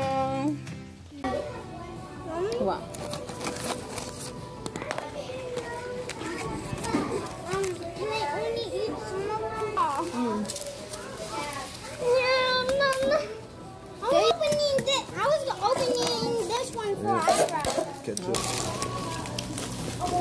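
Young children's voices calling out and chattering as they play, with music in the background.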